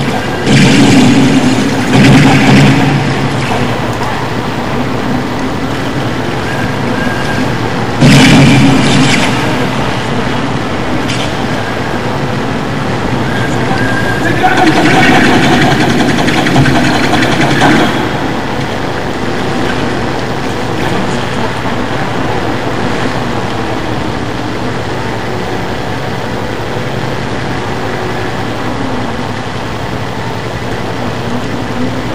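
Lo-fi, heavily distorted noise music: a dense, steady wash of noise with louder surges at the start, about eight seconds in, and from about fifteen to eighteen seconds in, where some pitched voice-like sounds rise out of it.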